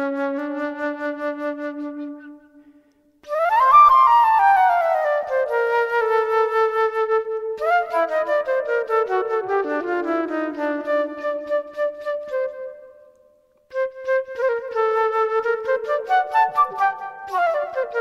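Solo flute improvising, playing phrases of mostly falling notes. It breaks off twice for a short pause, about three seconds in and about thirteen seconds in.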